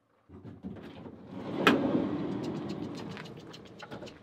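A van's sliding door being opened: a sharp latch click about a second and a half in, then a rolling rush that fades as the door slides along its track.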